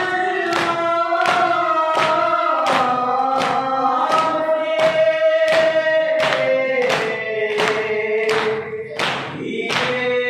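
A group of men chanting a noha (mourning lament) in unison, with the rhythmic slaps of matam (chest-beating) landing about every 0.7 seconds. The sung melody steps down lower about seven seconds in.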